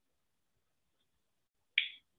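Near silence, then one short sharp click near the end.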